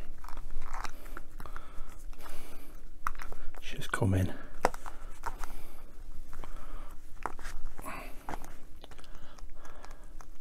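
Hand-handling noise of a softened rubber model tyre being squeezed and worked over a plastic wheel rim on a towel: irregular clicks, creaks and rubbing. A brief grunt-like voice sound comes about four seconds in.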